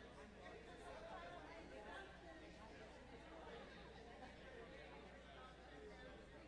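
Faint, indistinct chatter of a congregation talking among themselves in a large hall, with a steady low hum underneath.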